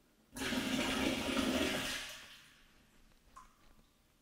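Bleach poured from a glass measuring cup into a large plastic water cistern through its top opening, splashing down into the tank: a steady liquid rush of about two seconds that tails off.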